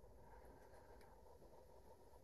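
Near silence: only faint, steady background noise between spoken remarks.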